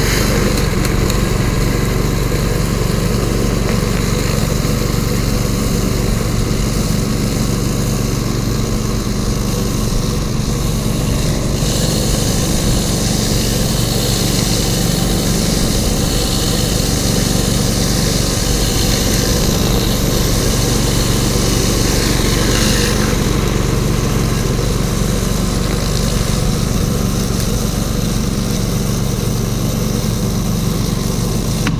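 Pressure washer's gasoline engine running steadily under load, a constant engine hum over the hiss of the spray, without let-up.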